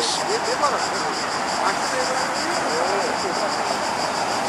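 A chorus of insects chirping high in the trees in a fast, even rhythm, over the steady noise of street traffic.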